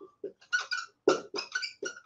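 Dry-erase marker squeaking across a whiteboard in a run of about five short strokes, each squeak at the same high pitch.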